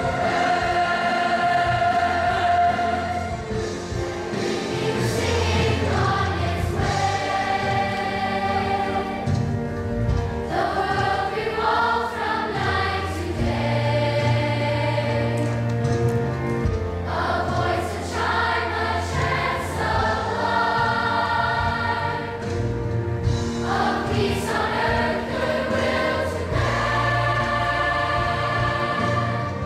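A large youth choir singing in harmony, holding long chords that change every second or two.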